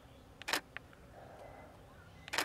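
DSLR camera shutter firing once, a sharp click about half a second in, with a few fainter clicks around it.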